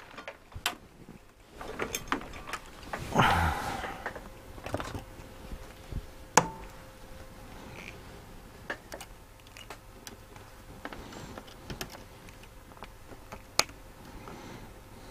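Irregular clicks and light knocks of hands working among the parts and wires of an open Tandberg TP41 radio chassis, with a brief scuffle about three seconds in and two sharper clicks, one about six seconds in and one near the end.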